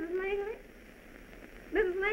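A woman's high-pitched voice crying out in distress. One cry ends about half a second in, and another begins near the end.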